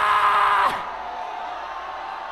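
A man's long, drawn-out shout through a microphone and loudspeakers, held on one pitch and then falling away and ending under a second in. After it comes the steady noise of a large congregation.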